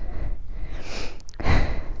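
A person's heavy breathing close to the microphone, with a louder exhale about one and a half seconds in.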